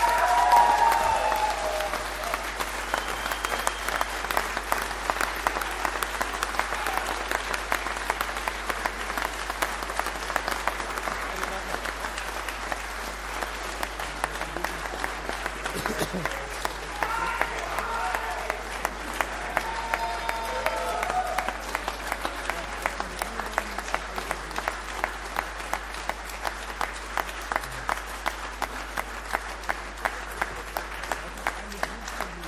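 A large hall audience applauding a motion just carried by vote, with a few voices calling out at the start and again about two-thirds in. From about two-thirds in, the clapping settles into an evenly spaced rhythmic clap.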